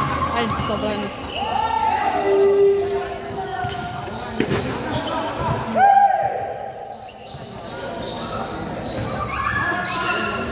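Basketball bouncing on a hard court during a pickup game, with players' voices calling out and two short squeaks of sneakers on the floor, about a second and a half in and again around six seconds.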